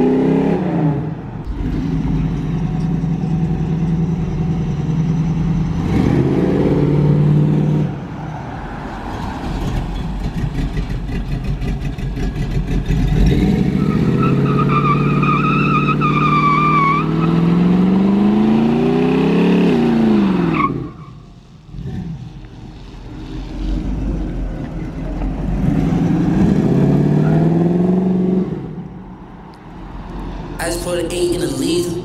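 A car engine revving hard in repeated rising surges as the car spins donuts, with tyre squeal through the middle. The longest surge climbs steadily before the engine note drops away about two-thirds of the way through, and it drops away again near the end.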